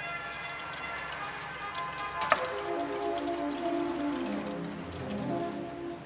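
Rieger pipe organ playing a line of held notes that steps downward, on the gamba, a slow-speaking string-imitating stop, coupled with a quick-speaking flute stop, which together blend into one new tone. A sharp click comes about two seconds in.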